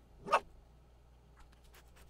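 A small cartoon dog gives a single short bark about a third of a second in, then faint rapid clicks follow from about one and a half seconds in.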